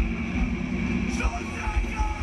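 A rock band playing live, recorded from within the crowd: loud, overdriven bass and drum beats under guitar, with voices mixed in.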